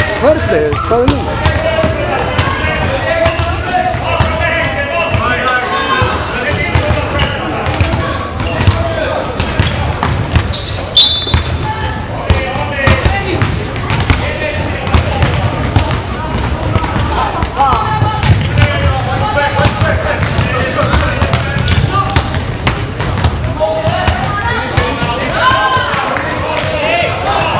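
Basketball game in a large sports hall: a ball bouncing on the hall floor with sharp knocks that echo in the room, over a continuous background of voices from players and spectators.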